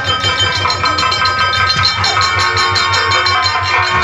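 Nautanki stage band playing a fast dance rhythm: the nagara kettle drum and dholak beat out a quick, even pattern of strokes under sustained melodic tones.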